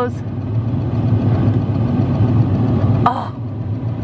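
Steady low motor hum, even and unbroken, with a brief higher sound about three seconds in.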